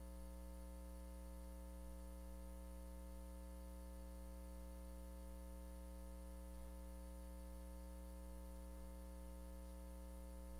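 Steady low electrical hum with a faint hiss under it, unchanging throughout: mains hum in the room's microphone and sound system.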